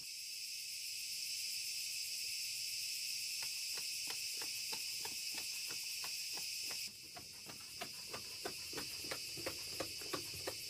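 Crickets chirring steadily in the night, dropping suddenly in level about seven seconds in. A few seconds in a regular ticking starts, about three ticks a second, getting louder toward the end.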